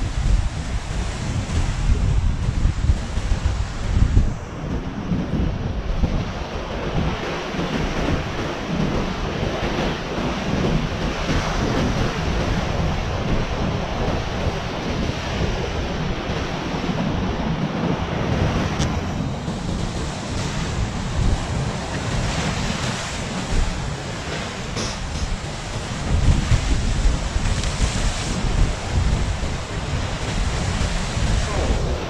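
Sea waves breaking and washing on a rocky shore, a steady noise of surf. Wind buffets the microphone in gusts, strongest near the start, about four seconds in and again near the end.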